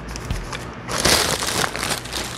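Clear plastic bag around a new brake drum crinkling as it is handled, a soft rustle at first that turns into a louder, busier crackle about a second in.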